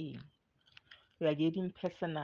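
A man's voice speaking in short phrases, with a few faint clicks in the pause between them about half a second to a second in.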